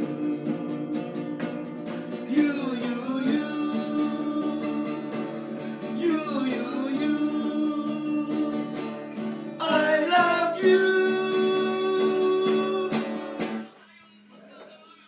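Men singing together to a strummed acoustic guitar; the song finishes on a long held note shortly before the end.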